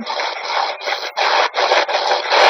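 SB-11 spirit box sweeping through radio stations: choppy radio static broken into short bursts about three times a second.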